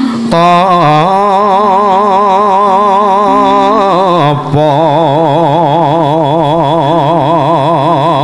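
A wayang kulit dalang singing a suluk, holding two long notes with a wide, fast vibrato, the second starting about four and a half seconds in. Steady lower notes from the gamelan accompaniment sound underneath.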